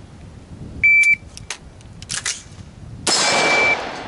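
Shot timer start beep about a second in, then the clacks of the magazine being tapped and the charging handle racked on an AR-15-style rifle, then a single rifle shot a little over two seconds after the beep.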